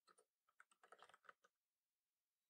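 Faint typing on a computer keyboard: a quick run of key clicks over the first second and a half as a terminal command is typed.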